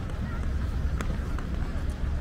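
Outdoor street ambience on a seaside promenade: indistinct voices of passers-by over a steady low rumble, with a few sharp clicks, the loudest about a second in.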